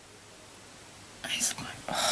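A woman whispering under her breath: short, breathy, unvoiced sounds starting about a second in after a near-quiet pause.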